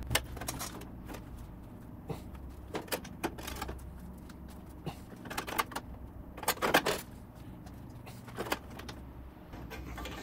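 Irregular light clinks and scrapes of a thin sheet-steel patch panel being handled and pressed against the car's body metal, the loudest cluster about two-thirds of the way through, over a low steady hum.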